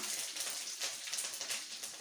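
Mustard seeds and freshly added curry leaves crackling and sizzling in hot oil, with many small rapid pops over a steady frying hiss.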